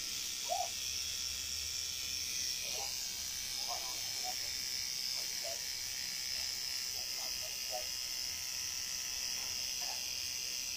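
Tattoo machine buzzing steadily as it works on skin.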